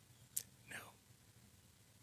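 Near silence, broken by a short mouth click and, just after, a faint breathy vocal sound that falls in pitch, like a held-back sob or sigh.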